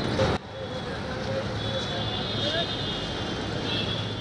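Steady road traffic noise with a low engine hum. The background drops in level just under half a second in.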